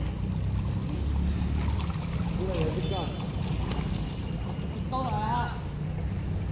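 Swimming-pool water moving as a swimmer pushes off from the wall into a face-down float, over a steady low rumble. Faint distant voices come in briefly about midway and again near the end.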